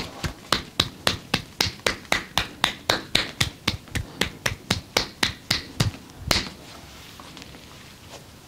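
Hands striking the arm in a rapid percussive massage, about four sharp slaps a second, ending with one louder slap a little over six seconds in.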